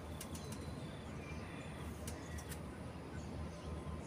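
Outdoor background noise: a steady low rumble with a few faint bird chirps and a handful of sharp clicks, two of them near the start and a cluster about two seconds in.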